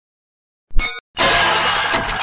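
A sharp metallic clang from a broken coffee machine being stamped on. About half a second later comes a loud crash of shattering glass and metal that runs on and fades over more than a second.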